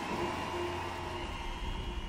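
Quiet electronic drone: a few faint held synthesizer tones over a steady low rumbling noise, between the crowd's cheering and the entry of the music.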